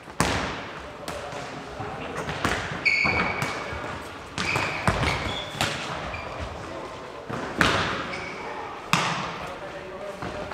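Nohejbal ball being kicked, headed and bouncing on a wooden sports-hall floor: a series of sharp impacts that echo in the large hall, the loudest near the start and about three quarters of the way through, with short high squeaks of sneakers on the floor in between.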